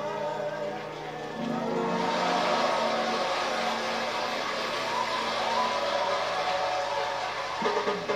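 A singer's final held note, wavering with vibrato, dies away about a second in over the band's sustained closing chord, and studio audience applause swells in about two seconds in; heard off a TV speaker.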